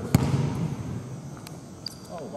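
A single basketball bounce on a hardwood gym floor just after the start, a pre-free-throw dribble, echoing in the large gym, followed by a couple of faint ticks.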